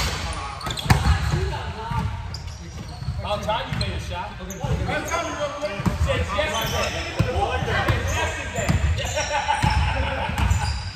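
Basketball thudding on a hardwood gym floor and players' feet running during a pickup game, with the players' shouting voices. Everything echoes in a large gymnasium.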